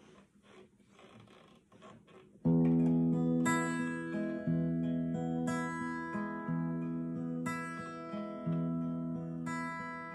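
Acoustic guitar playing a slow introduction: after a quiet start, chords come in about two and a half seconds in and are struck about once a second, each left ringing into the next.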